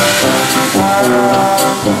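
Traditional Dixieland jazz band playing live: trumpet, clarinet and trombone over tuba, piano and drums, with cymbal strokes.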